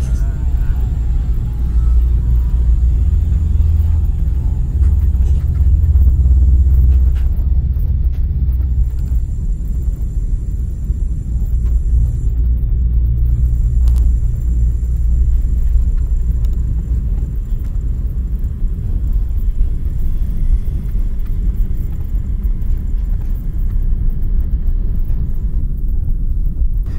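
Experimental electronic drone from modular and physical-modelling synthesis: a loud, steady low rumble with a faint high whine above it that drops out briefly twice, and a few sharp clicks.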